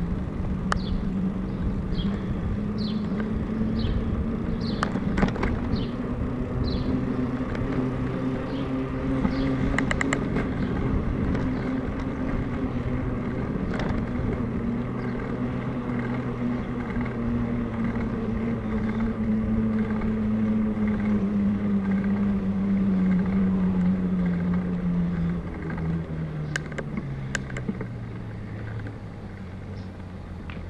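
Bicycle tyres humming on asphalt while riding, the pitch of the hum dropping over the last few seconds as the bike slows. Birds chirp repeatedly during the first several seconds.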